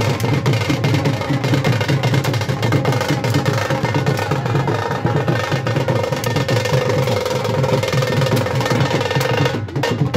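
Drums beaten in a fast, continuous roll. A steady held tone sounds over them in the second half, and the drumming drops out briefly near the end.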